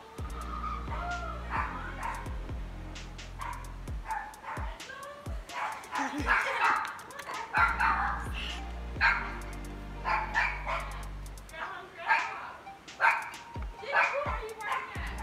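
A dog barking repeatedly in short, separate calls.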